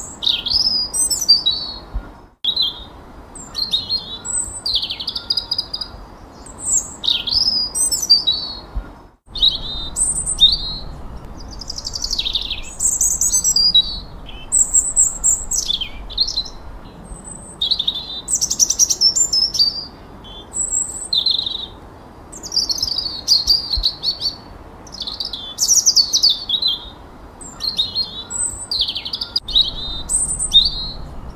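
Songbirds singing: a steady run of short, high whistled phrases, many sliding down in pitch, with brief pauses between them. The sound cuts out for an instant twice, about two and nine seconds in.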